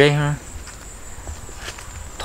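A man's voice finishing a word, then a pause filled with faint outdoor background and a steady high-pitched insect drone.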